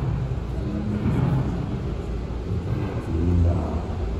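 Low rumble of a large hall and stage with faint distant voices, just after the band stops playing.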